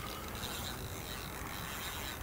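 Spinning reel's mechanism running steadily while a hooked carp is played on a bent rod; the fish is pulling off fast, which marks it as a small, slim common carp.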